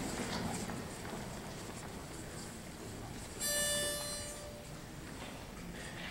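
Pitch pipe sounding a single steady note for about a second, giving the a cappella group its starting pitch, over faint hall ambience.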